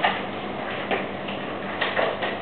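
Three soft clicks, about a second apart, over steady room noise and a faint low hum.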